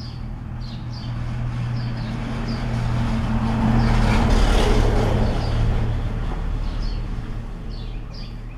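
A motor vehicle passing, its engine and road noise swelling to a peak about halfway through and then fading, over a steady low hum. Small birds chirp in short high notes at the start and near the end.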